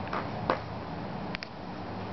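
A few short, sharp clicks over a steady low hum: one right at the start, the loudest about half a second in, and a quick pair a little past the middle.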